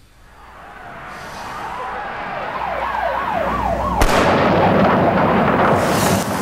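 A swelling din with a siren wailing rapidly up and down through it. A sharp bang comes about four seconds in, and the din stays loud after it.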